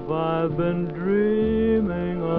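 Vintage 1930s–40s swing-era music recording playing: a slow melody of long held notes.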